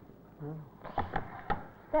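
Plastic lid of an electric multi-purpose cooker being handled and set in place, making a few sharp knocks and clicks about one second in and again at about a second and a half.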